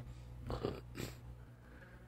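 A man's hesitant "uh" about half a second in, then a short sharp breath or sniff, over a steady low hum.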